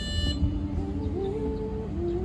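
A cappella singing through a PA: a held note stops just after the start, then a single low voice holds and steps upward in pitch over about a second and a half.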